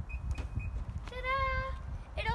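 Infiniti QX60 power liftgate operating: a few short high beeps in quick succession signal that the tailgate is moving. About a second in, a voice gives a held, steady-pitched sound lasting about half a second.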